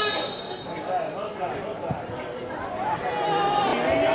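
Footballers' voices shouting calls across the pitch, in short bursts, with a single dull thud about two seconds in.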